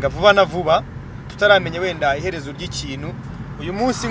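A man's voice in a car's cabin, coming in three stretches with short gaps, over a steady low hum from the car's engine and road noise.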